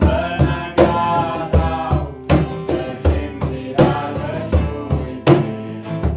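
Mixed men's and women's voices singing a worship song in Welsh over two acoustic guitars and a cajón. The cajón keeps a steady beat of about one low thump every three-quarters of a second.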